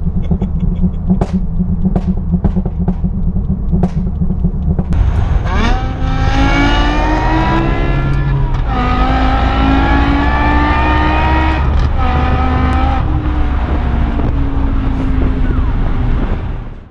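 BMW M5's V10 engine under hard acceleration, heard from the cabin, climbing in pitch through several gears with quick drops at each upshift. It is preceded by about five seconds of a lower, steady vehicle rumble.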